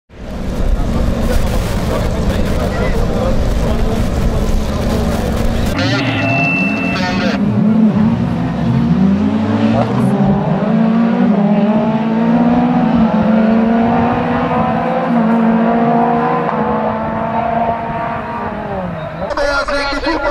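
Several circuit race cars' engines running hard in a pack. A dense roar for the first six seconds gives way to clear engine notes that climb and drop again and again as the cars accelerate and change gear.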